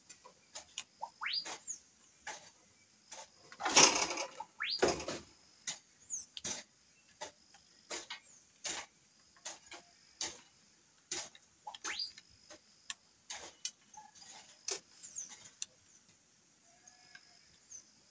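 Scattered clicks, taps and knocks of plastic and metal as a handheld circular saw is handled and opened up by hand to get at its carbon brushes, one of which has burnt out; a louder scraping rustle about four seconds in. The saw's motor is not running.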